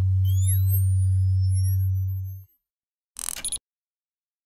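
Synthesised outro sound effect: a loud steady low hum with high rising sweeps and falling glides over it, cutting off about two and a half seconds in, followed by a short burst of noise near the end.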